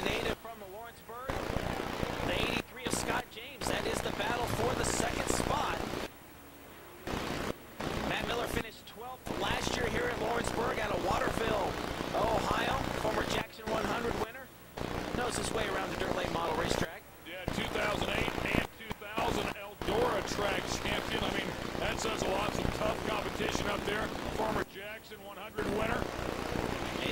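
Dirt late model race cars' V8 engines running at racing speed on the track. The sound cuts out briefly about a dozen times.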